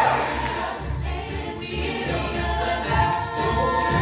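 Mixed-voice a cappella group singing held chords in harmony, over a sung bass line and beatboxed vocal percussion.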